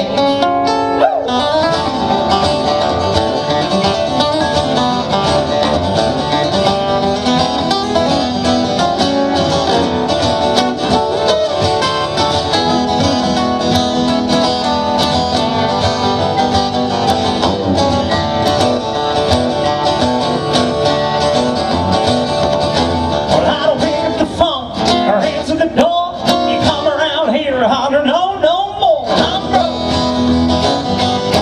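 Two acoustic guitars playing an instrumental break in an up-tempo rockabilly-style country song, performed live. Near the end a bending, gliding melody line comes to the fore.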